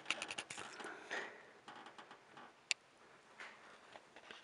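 Light clicks and rustling, thickest in the first second or so, with one sharp click a little before three seconds in.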